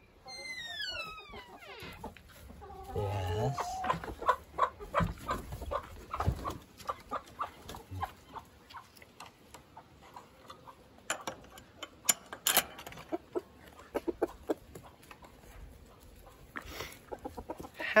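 Backyard hens clucking in short, scattered calls, with a falling call near the start, as they are let out of the coop. A single sharp clatter sounds about twelve seconds in.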